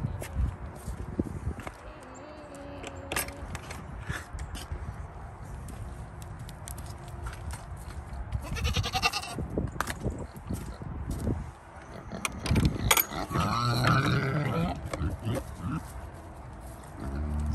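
Goats bleating: a short quavering bleat about nine seconds in and a longer wavering one near the end, among scattered knocks and rustling in straw.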